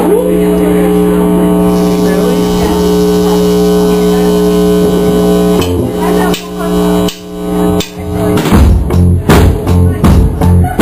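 Live rock band starting a song: an electric guitar chord held and ringing through the amp for about five seconds, then a few scattered notes, and from about eight seconds in the drums and guitars come in together with a steady, loud beat.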